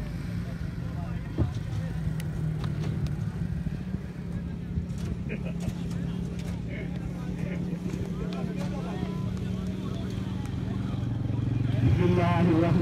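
Faint distant voices over a steady low hum, with one sharp knock about one and a half seconds in.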